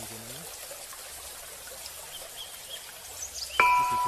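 A faint steady outdoor hiss with a few faint high chirps. Near the end a bright mallet-percussion note, like a glockenspiel, starts a tune of background music.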